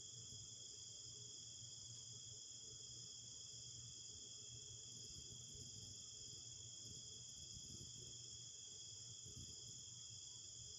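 Faint, steady chorus of crickets trilling without a break, high-pitched.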